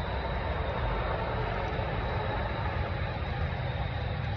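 Small tabletop water fountain running: a steady rush of falling water with a low rumble underneath.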